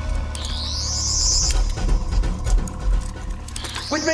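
Sonic screwdriver sound effect: a warbling electronic whine that rises in pitch and then holds, heard twice, once for about a second early on and again starting just before the end. A low musical drone runs underneath.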